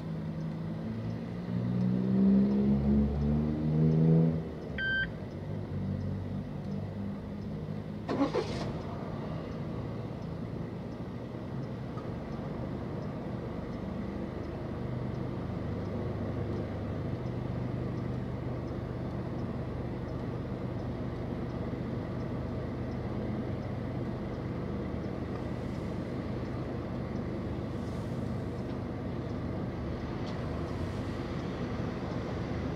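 Traffic heard from inside a car waiting at a red light. A nearby vehicle accelerates in the first few seconds, its engine pitch rising in steps, and a short electronic beep follows about five seconds in. A quick rising sound with a click comes at about eight seconds, then a steady low engine idle hum.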